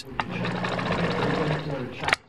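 Bernina domestic sewing machine running steadily as it stitches fabric, a fast, even mechanical sound that stops right at the end.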